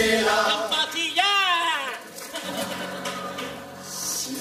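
Carnival chirigota performers' voices on stage: a high falsetto cry sliding down in pitch about a second in, then a quieter stretch with a low held note before the singing picks up again.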